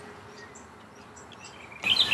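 Birds chirping faintly in the background, with a brighter run of short, high chirps near the end.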